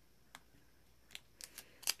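About five light, sharp clicks, one early and the rest close together in the second half, as sticky tape is dabbed onto and lifted off a clear jelly nail-stamping stamper to pull away the unwanted stamped polish hearts.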